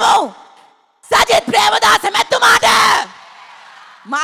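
Speech only: a woman speaking loudly into a microphone. A short gap about a second in, then about two seconds of shouted speech that stops suddenly, leaving a faint hiss.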